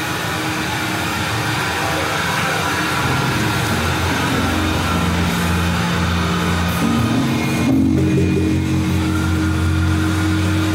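A metal band playing live, with heavily distorted guitars and bass holding low droning notes over a dense wash of noise. The held notes shift pitch a couple of times, and the top end thins out briefly near the end.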